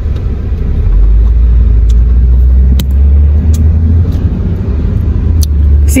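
Deep, steady road and engine rumble inside a moving car's cabin, growing louder about a second in.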